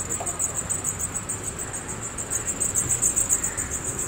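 Insects chirring in a steady, high, rapidly pulsing trill over a low street rumble.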